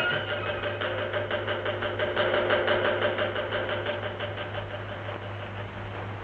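A temple bell rung rapidly, about five or six strikes a second, with its ringing tone held under the strikes and slowly fading toward the end. A steady low hum from the old film soundtrack runs underneath.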